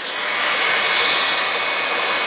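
Two hot-air popcorn poppers, modified for roasting coffee beans, running together: a steady hiss of fan-blown hot air that swells a little in the middle.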